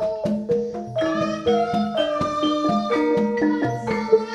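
Javanese gamelan ensemble playing: struck bronze metallophones and gongs ring out a steady run of notes, several to the second.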